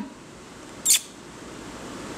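A person's single short kissing call to a dog, a quick hissy smack about a second in, over quiet room tone.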